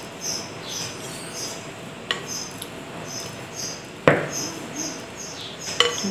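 Liquid cake-batter mixture poured from a glass bowl onto flour in a plastic mixing bowl, with a small click about two seconds in and a sharper knock about four seconds in. Short high chirps repeat about twice a second in the background.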